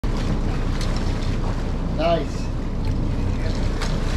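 Twin diesel engines of a 55 Viking sport-fishing boat running with water rushing and splashing at the stern. A short shout comes about two seconds in.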